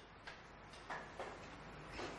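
A few faint, short clicks at uneven intervals over the low, steady hum of a quiet room.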